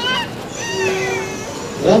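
A high-pitched, wavering cry: one call rises and falls right at the start, then a second call slides downward for about a second, before the preacher's voice returns near the end.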